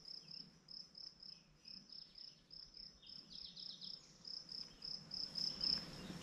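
Insects chirping in a steady high pulse about five times a second, with a few faint bird chirps a few seconds in.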